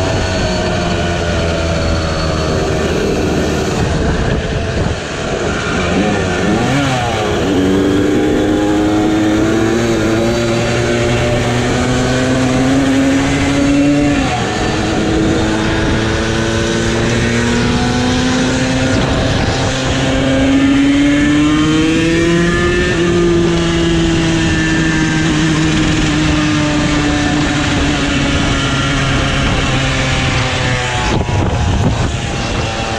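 Two-stroke 50cc moped engines running at road speed, the nearest engine's note climbing slowly, dropping suddenly about halfway through as a gear changes, then rising and easing off again.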